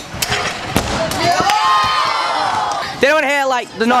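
Scooter wheels rolling on a wooden skatepark ramp with sharp clacks of metal deck and wheels on the boards as a flair attempt fails, under crowd voices, then a loud drawn-out shout about three seconds in.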